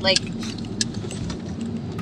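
Steady low road and engine rumble inside a moving car's cabin, with a few faint ticks.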